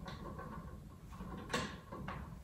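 A table lamp's switch clicks once, about one and a half seconds in, turning the lamp on, over low room noise.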